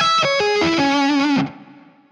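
Distorted electric guitar playing a fast run of single notes down a D minor arpeggio shape, landing on a held note with vibrato. The held note is muted off about a second and a half in.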